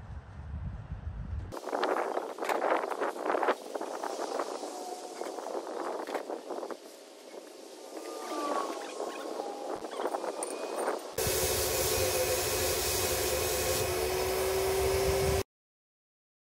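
Paper towels rustling and crinkling as they wipe down an air tank. About two-thirds of the way through, a Graco HVLP turbine paint sprayer starts running with a steady whine under the hiss of the spray gun, then cuts off suddenly just before the end.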